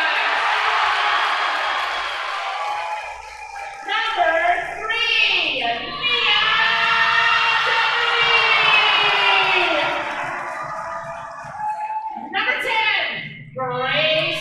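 Player introductions in a gym: a voice calls out in long, drawn-out phrases over crowd cheering and clapping.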